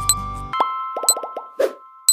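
Background music stops about half a second in, and a countdown timer sound effect starts: a short high tick about once a second, each followed about half a second later by a lower plop.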